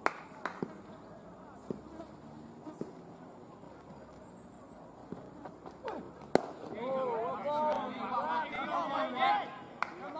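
Outdoor cricket field: a few faint clicks, then a single sharp knock about six seconds in, the loudest sound, followed for about three seconds by men's voices calling out across the field.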